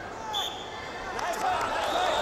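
A referee's whistle gives one short, high blast, over arena crowd voices that grow louder about a second later.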